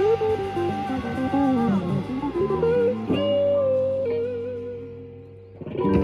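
Closing bars of a live rock band: electric guitar plays a run of single notes over bass and drums, then the band holds a final chord about three seconds in and lets it fade away. A last short hit comes just before the end.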